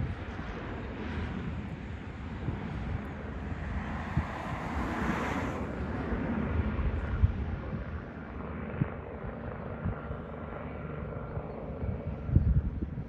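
Helicopter climbing away, its engine and rotor noise swelling about halfway through and then slowly fading, with wind buffeting the microphone.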